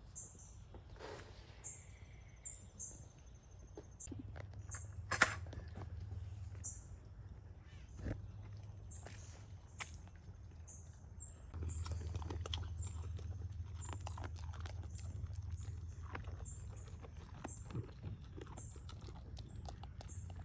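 Young goats eating feed pellets from a rubber feed pan: faint, irregular crunching and clicking as they chew and nose the feed. Short, high-pitched chirps repeat in the background, and a low rumble comes and goes.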